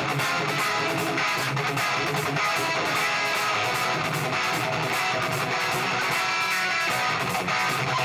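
Electric guitar playing a rhythmic hard-rock riff on its own, without drums.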